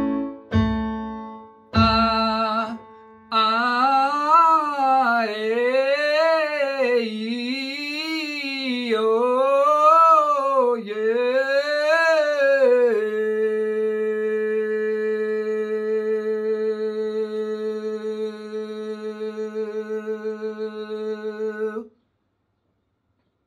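Electronic keyboard chords struck on A, then a man singing a vocal scale exercise from A3, his voice running up and down the scale about five times. He then holds one long note that wavers slightly near the end.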